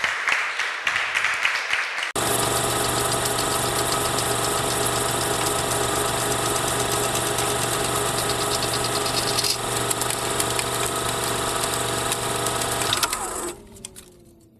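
Audience applauding briefly. About two seconds in, it switches abruptly to a film projector running, a steady whir with a fast, even clatter. Near the end the projector winds down, its pitch falling as it fades.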